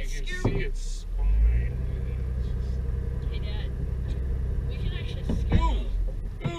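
A vehicle's engine and road rumble, heard from inside the cabin. The low rumble swells about a second in as the vehicle moves forward along a dirt road. Brief voices come in at the very start and again near the end.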